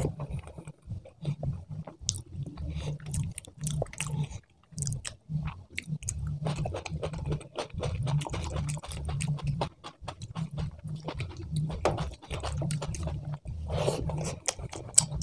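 Close-miked chewing of a mouthful of rice and curry, a dense irregular run of quick mouth clicks over a low pulsing rumble, with a brief pause a little after four seconds.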